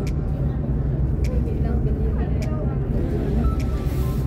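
Steady low drone of a bus's engine and tyres inside the cabin while cruising at speed, with faint clicks about once a second.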